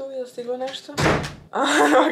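A single dull, heavy thump about a second in, between stretches of a woman's speech.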